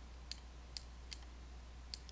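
Faint, irregular clicks from a computer mouse, about four in two seconds, over a steady low electrical hum.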